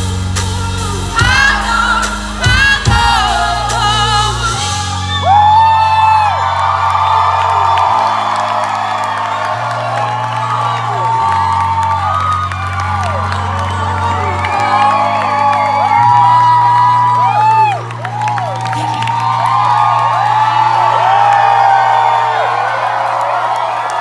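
Live pop band playing loudly through a concert PA with drums and deep bass. About four and a half seconds in, the drums and bass drop out, leaving held synth chords that change every couple of seconds under the crowd's whoops and cheers.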